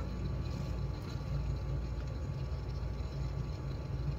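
Steady low background hum of room tone, with no distinct sounds.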